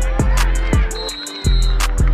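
Hip hop instrumental beat with a deep bass on each beat under quick, even hi-hat ticks. The bass drops out briefly a little past the middle.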